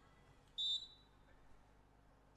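Referee's whistle: one short blast of about a third of a second at a steady high pitch, the signal that authorizes the serve.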